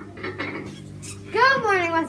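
Faint light handling noises over a steady low electrical hum, then a girl starts speaking a little past halfway.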